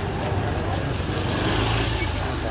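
Motor scooter engine running as it rides past close by, growing a little louder toward the end.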